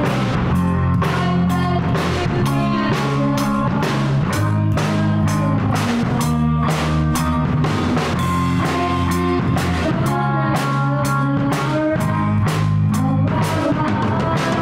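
A young rock band playing live: a drum kit keeps a steady beat under electric guitars, continuing without a break.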